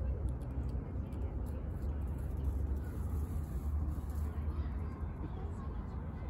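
Steady low outdoor rumble with a faint haze over it and a few light ticks scattered through it.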